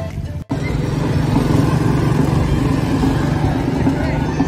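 Background music cuts off abruptly about half a second in, giving way to steady outdoor street noise with a low engine hum of passing traffic such as motorbikes.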